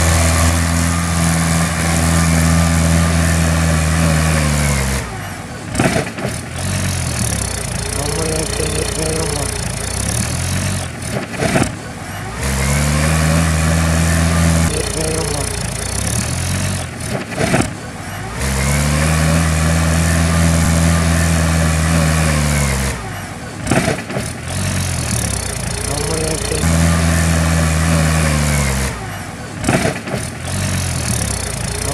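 Mahindra 475 DI tractor's four-cylinder diesel engine working hard under the load of a full trailer. It holds high revs for several seconds at a time, and its pitch sags and climbs back again about every six seconds. Part of the sequence is heard played backwards.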